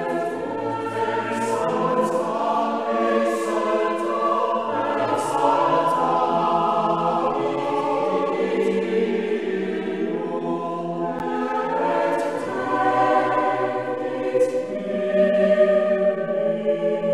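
Choir singing slow, sustained chords in several voice parts, with the hiss of sung consonants now and then.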